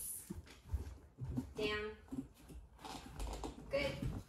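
A large dog's footsteps on a tile floor, with light knocks and claw clicks as it walks off and steps onto a raised cot bed. Two short words are spoken between them.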